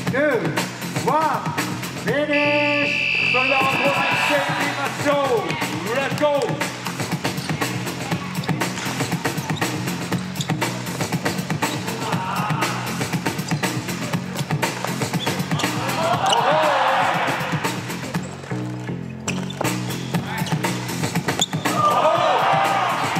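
A hip-hop track with vocals playing steadily, with a basketball bouncing on the court floor now and then.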